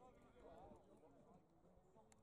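Near silence, with faint distant voices of players calling to each other across the field.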